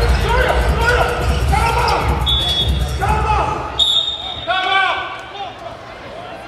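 A basketball being dribbled on a hardwood arena court, with voices over it.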